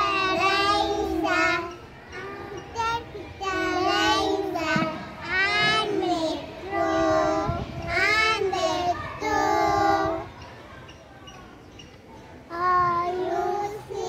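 Young children singing an action song together, in short phrases with brief breaks; the singing drops away for a couple of seconds near the end, then starts up again.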